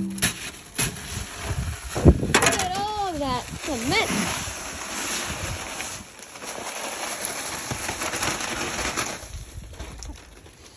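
Dry concrete mix pouring and sliding out of a paper bag into a wheelbarrow, a steady hiss that fades near the end. A few knocks come in the first couple of seconds, and a wavering hummed voice is heard around three seconds in.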